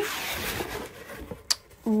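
Cardboard box lid being lifted open: a scraping, rustling rub that fades over about a second, then a single sharp tap about one and a half seconds in.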